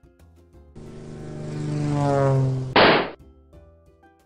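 Cartoon sound effect of a swat: a falling whine with a rushing hiss that grows louder for about two seconds, then a loud, short smack about three seconds in. Light background music plays underneath.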